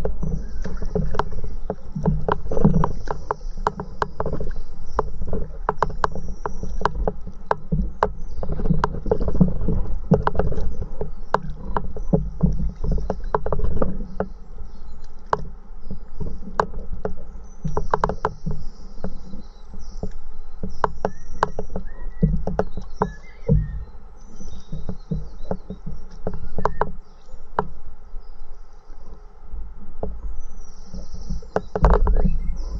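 Stand-up paddleboard being paddled: water splashing and dripping from the paddle, with many irregular sharp clicks, over a steady low rumble of water moving against the board.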